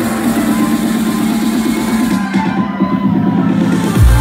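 Electronic dance music from a live DJ set at club volume, in a build-up: a fast repeating pulse under a held note, with the treble filtered away in the second half.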